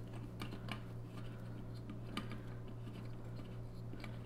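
Faint, irregular small clicks and ticks as a nut is screwed onto the threaded shank of a keg tap to fix it through the rind of a hollowed-out watermelon.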